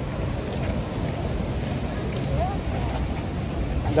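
Wind buffeting an outdoor phone microphone: a steady low rumble. A faint voice can be heard in the background about halfway through.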